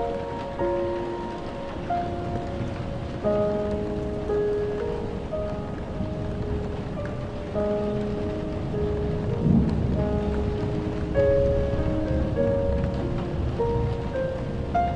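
Piano notes played one after another, roughly one a second, over the steady hiss of rain. A low rumble of thunder swells through the middle.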